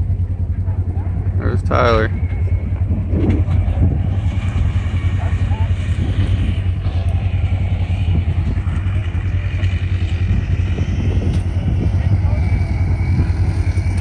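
Off-road vehicle engines idling together, a steady low drone, with a few short words spoken about two seconds in.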